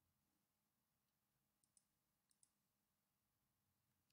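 Near silence, with two very faint double clicks a little over half a second apart near the middle, like a computer mouse button pressed and released.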